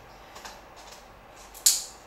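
Faint plastic handling ticks, then one sharp click near the end as a Sony HVL-F42AM speedlight's foot is locked onto a radio trigger's shoe.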